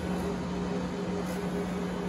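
HP Latex 365 large-format printer running mid-print: a steady machine hum with a constant low tone.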